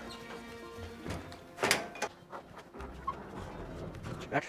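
Metal server-rack cabinet's mesh door shut with a single thunk about two seconds in, then a low rumble as the heavy battery-filled cabinet is turned on the floor, over faint background music.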